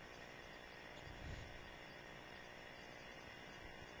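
Near silence: faint, steady background hiss and hum.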